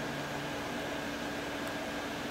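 Electric fan running in the garage: a steady whirring noise with a low hum.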